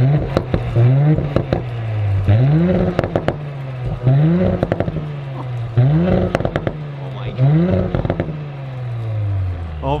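2018 Audi S4's turbocharged 3.0 V6 exhaust, through aftermarket front pipes with the exhaust valves open, being blipped about six times. Each rev rises quickly and falls back, with a burst of crackles as it drops.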